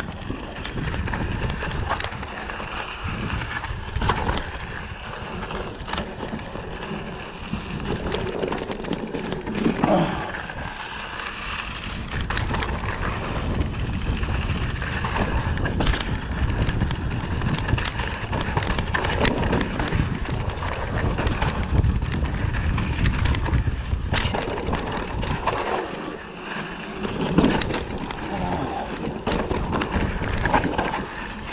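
Kona Satori mountain bike rolling down a dirt trail: tyre noise and wind buffeting on the camera's microphone make a steady rumble, with frequent clicks and knocks as the bike rattles over bumps.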